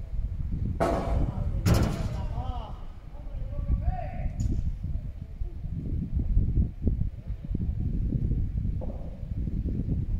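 Two sharp hits of a padel ball, a little under a second apart, about a second in, as the rally ends. A few faint voices follow over a steady low rumble.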